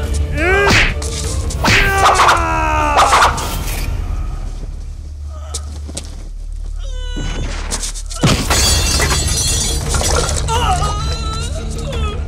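Film fight-scene soundtrack: a dramatic background score with cries in the first few seconds, then a sudden crash with breaking glass about eight seconds in.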